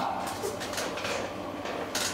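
A pause in a man's talk on stage: the steady background noise of a large room with a faint low hum, the last word's echo fading at the start, and a brief click just before the end.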